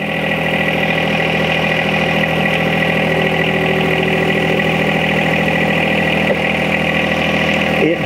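John Deere 1025R compact tractor's three-cylinder diesel engine running steadily while it drives the loader hydraulics to pull the 120R loader onto its mounts.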